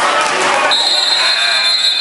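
Referee's whistle blown about two-thirds of a second in and held for about a second and a half as one steady shrill tone, stopping play, over the noise of voices in a gym.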